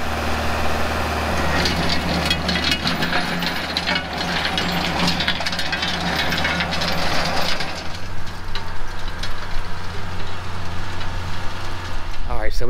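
Tractor engine running steadily under load while a PTO-driven rotary tiller churns through grassy sod and hard dry soil, a continuous gritty crackle over the engine. The crackle eases about eight seconds in.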